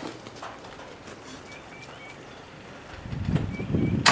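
Quiet outdoor ambience with a few faint, short bird chirps, two or three near the middle and another near the end. A low rumbling noise builds over the last second.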